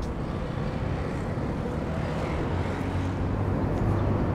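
Low, steady rumble of outdoor traffic, growing slightly louder in the second half.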